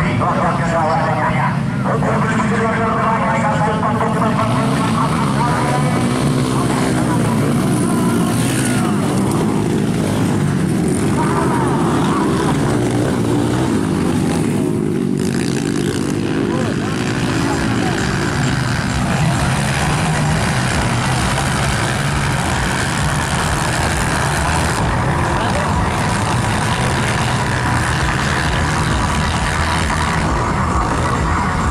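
Several motocross dirt bike engines revving up and down as the bikes race around a dirt grasstrack circuit, their pitch repeatedly climbing and falling.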